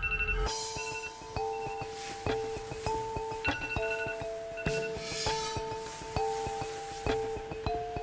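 Background music: a light, plinking melody of short struck notes over one steady held tone.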